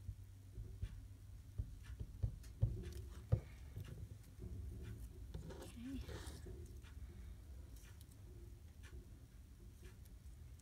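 Small handling sounds of paper craft scraps and a plastic glue bottle on a cutting mat: a few light knocks and clicks in the first few seconds, the loudest as the bottle is set down, then soft rustling as a paper strip and lace trim are pressed into place, over a low steady hum.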